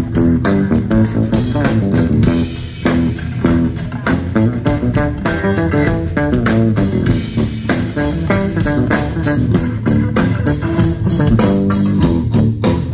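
Blues-rock band playing live: electric bass and electric guitar over a drum kit with a steady beat, heard from the audience in the hall.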